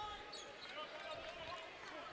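Basketball being dribbled on a hardwood court, a few faint bounces over the low background noise of an arena crowd.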